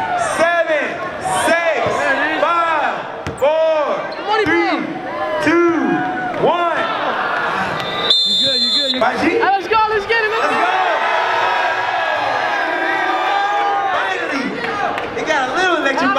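Voices rising and falling in a crowded hall. About eight seconds in comes a short, high, steady tone lasting about a second.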